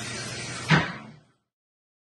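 Quiet room tone, then a single short thump about three-quarters of a second in, after which the sound fades into silence.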